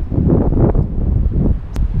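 Wind buffeting the camera's microphone: a loud, gusty rumble with no tone to it. A single faint click comes near the end.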